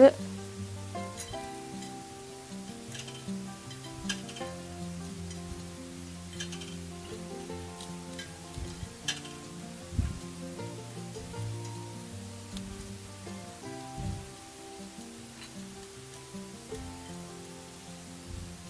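Soft background music with slow, held notes, over which arrowroot biscuits are snapped by hand into small pieces, giving a few short, sharp cracks scattered through.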